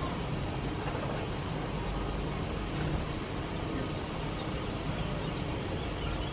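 Steady outdoor background noise, a low rumble with no distinct events, of the kind made by distant traffic.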